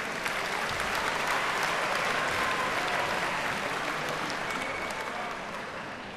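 Concert audience applauding, the clapping rising quickly and then dying away near the end.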